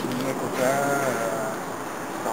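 A person's voice: one drawn-out, high-pitched vocal sound lasting about a second, its pitch rising slightly then falling.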